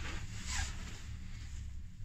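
Steady low rumble of a moving gondola cabin, heard from inside the cabin, with a brief rustling swish about half a second in.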